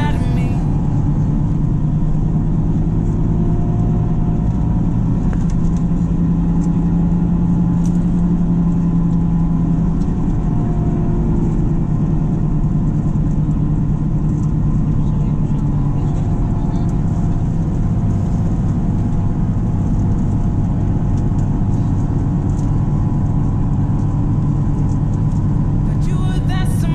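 Bus engine and road noise heard from inside the passenger cabin while driving: a steady low drone whose pitch shifts slightly about ten seconds in.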